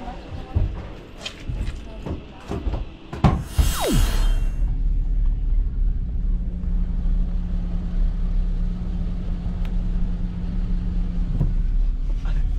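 Car cabin noise while driving: a steady low rumble of engine and road with a faint steady hum underneath. Before it, in the first few seconds, scattered knocks and short sounds, then a brief loud rushing noise with a falling tone.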